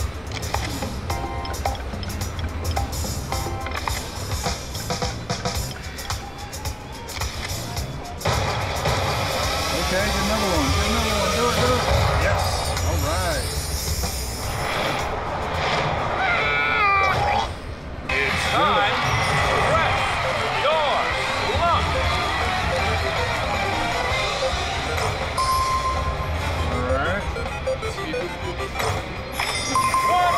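Press Your Luck video slot machine playing its electronic music and game sound effects as the reels spin, over casino background chatter. It gets louder from about eight seconds in.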